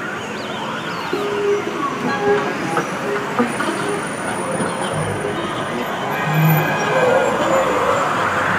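Street ambience: a steady bed of traffic noise with a siren wailing early on and faint voices, and a swell of noise rising in pitch near the end.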